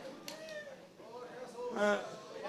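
Faint voices speaking off-microphone in a large hall, with a man's short, louder spoken 'é' near the end.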